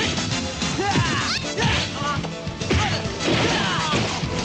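Fight-scene punch and kick impact effects, several in quick succession, with falling swish sounds, over background music.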